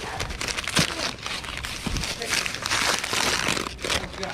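Old newspaper packing crinkling and rustling as it is handled and pulled away from a wrapped object, with many small sharp crackles.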